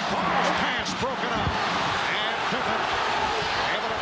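Arena crowd noise from a packed basketball arena, heard over the broadcast, with a basketball bouncing on the hardwood court.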